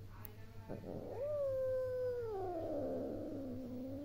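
A cat giving one long meow of about three seconds that starts about a second in, holds its pitch, then slides down toward the end.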